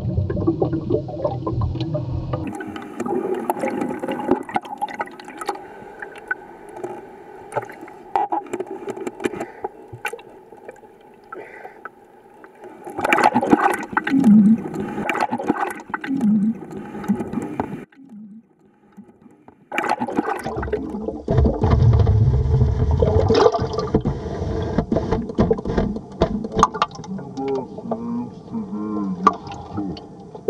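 Seawater sloshing and rushing around the camera, with muffled underwater rumbles. It dips quieter about eighteen seconds in, then swells to a loud low rush a few seconds later.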